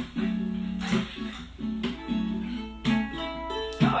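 Acoustic guitar strummed slowly, one chord about every second, each left to ring.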